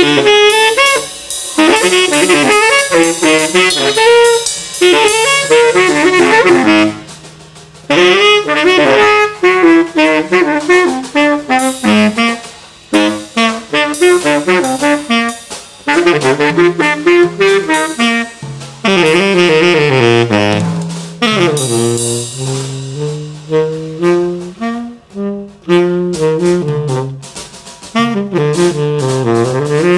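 Selmer Mark VI tenor saxophone playing quick, winding jazz runs over a Gretsch drum kit with Paiste cymbals. The saxophone's phrases break off briefly about seven and twelve seconds in.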